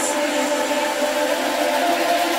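Electronic techno music in a beatless passage: held synth tones over a steady, noisy whirring texture, with no kick drum.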